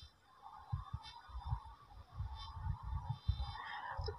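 Faint, irregular low thumps over a faint steady background hum and hiss.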